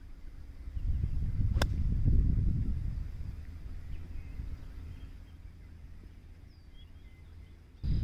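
A 60-degree wedge striking a golf ball in a full pitch shot: one sharp click about a second and a half in, over a low rumble.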